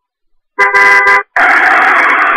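Loud car horn honking: a short blast about half a second in, then after a brief break a long, held blast.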